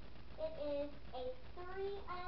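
A young girl singing a few short, held notes.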